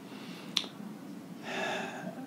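A single sharp click about half a second in, then a short, soft intake of breath about a second and a half in, over low room hum.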